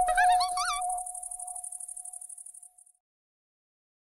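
Electronic logo sting: a held synthesizer tone with a high shimmer, topped by a quick run of warbling, insect-like chirps in the first second. It fades out and stops about three seconds in.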